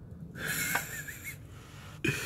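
A man's long, wheezy exhale of frustration, lasting about a second, with a faint wavering whistle in the breath and one light click partway through.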